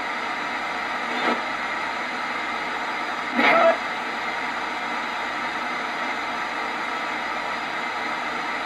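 Portable PLL radio used as a spirit box, sweeping through stations: a steady static hiss, broken by two short blips of broadcast sound about one and three and a half seconds in.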